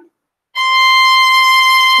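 Violin bowing one long, steady high note, the first finger in fifth position on the E string, starting about half a second in.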